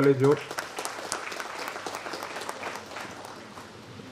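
A man's voice ends a sentence, then an audience claps, a dense patter of hand claps that slowly dies down over about three seconds.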